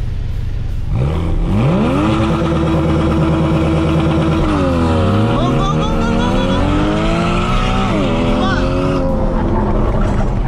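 Jaguar F-Type engine heard from inside the cabin at a drag-race launch. It revs up quickly and is held at steady high revs, then the pitch dips as the car pulls away. It climbs steadily under hard acceleration and falls sharply at an upshift near the end.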